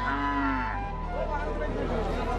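A cow mooing: one long, low call that ends under a second in, its pitch dropping slightly as it finishes.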